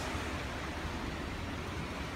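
Steady rushing noise of wind and sea, heavy in the low end, with no distinct events.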